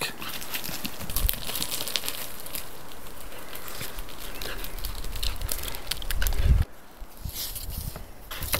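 A dog's paws scrabbling and running on gravelly dirt, a quick patter of small crunches, over a low rumble that builds and then cuts off suddenly near the end.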